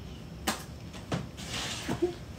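Quiet, stifled giggling: soft breathy exhalations through covered mouths, with two sharp clicks, one about half a second in and one about a second in, and a brief voiced catch near the end.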